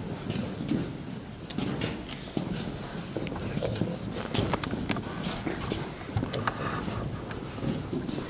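Boots of a line of people stepping and shuffling on a hard floor, a steady run of irregular clicks and scuffs, with low voices in the room.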